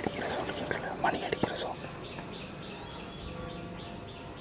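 A bird calling: a run of short, high chirps repeated about four times a second through the second half. Before it come soft voice noises and a few sharp clicks.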